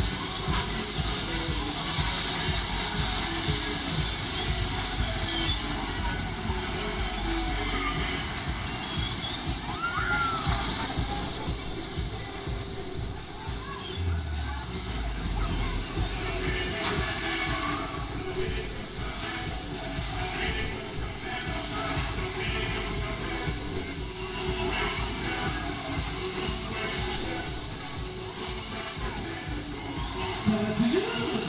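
Children's fairground ride turning, its running gear giving a thin, high-pitched metallic squeal. The squeal comes and goes in stretches of a few seconds: briefly at the start, then back from about ten seconds in, with short breaks, to the end.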